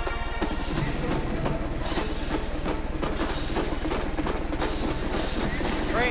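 Band music with a drum beat over the noise of a large indoor stadium crowd, carried on an old TV broadcast with a steady low hum.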